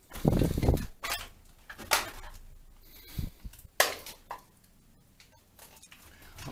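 Knocks and scuffs from people moving about and handling things in a small concrete room. A low scuffing thud comes a quarter second in, with a few sharp clicks and knocks over the next four seconds and another low thud about three seconds in.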